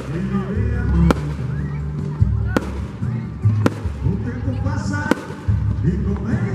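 Fireworks going off in about five sharp bangs, roughly one a second, over loud music with a heavy bass line and voices.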